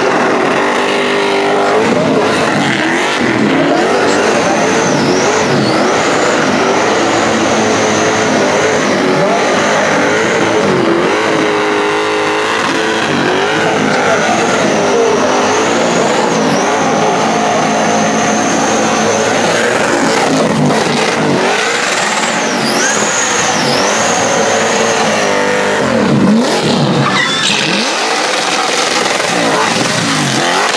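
Holden VC Commodore doing a burnout: its engine is held at high revs, rising and falling in pitch as the throttle is worked, with a steady high-pitched tyre squeal over it.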